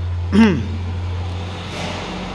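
A steady low hum that fades out near the end, with a short single vocal syllable from a person about half a second in.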